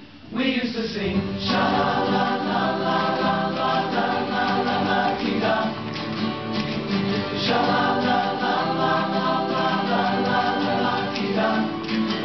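Male choir singing held chords in close harmony, without words, the chords changing about every two seconds, after a brief drop in level at the very start.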